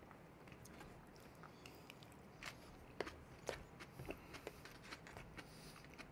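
Faint eating sounds: a fork picking at crunchy salad vegetables in a cardboard takeaway box, and chewing. A series of soft clicks, roughly every half second, comes in the second half.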